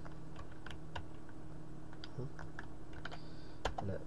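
Computer keyboard keystrokes: a dozen or so sharp, irregularly spaced key clicks over a faint steady low hum.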